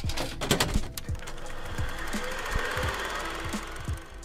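Outro title sting of music with sound effects. There are several sharp clicks at the start, low booms that drop in pitch throughout, and a dense, rapid rattling static texture that builds through the middle.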